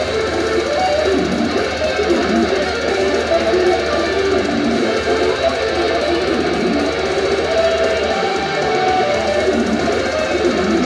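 Electric guitar played live through an amplifier: a fast, unbroken run of single notes, loud and steady throughout.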